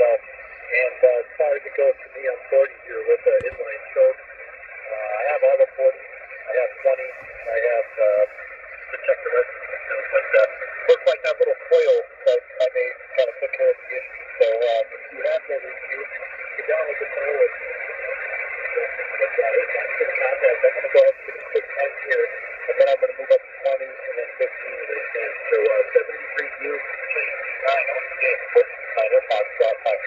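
Single-sideband voice on the 40 m ham band (7.287 MHz lower sideband) from a mobile transceiver's speaker. Distant operators talk in a thin, narrow-band voice, with scattered clicks of static.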